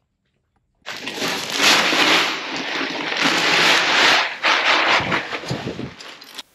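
Bruised barley pouring from a sack into a metal feeder: a steady rushing hiss of grain that starts suddenly about a second in and swells and eases as it pours.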